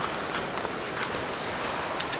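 Ice hockey rink sound: skates scraping on the ice and a few faint stick-and-puck clicks over the steady noise of the arena crowd.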